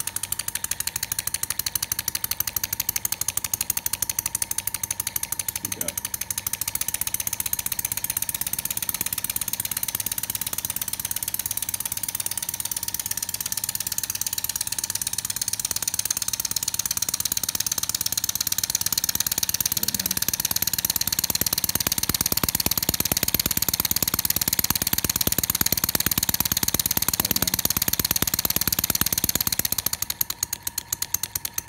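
Scratch-built model horizontal steam engine running fast: a rapid, even beat over a steady hiss, growing slightly louder about two-thirds of the way in.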